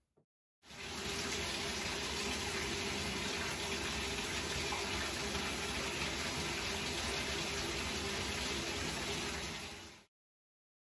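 Bathroom sink tap running steadily as a face is washed and rinsed. The water starts about a second in and fades out at the very end.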